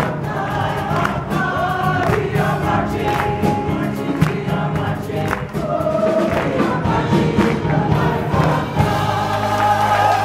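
Choir singing an upbeat gospel song in several voices, with hand claps keeping the beat.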